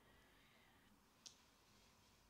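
Near silence: room tone, with one faint short click just past a second in.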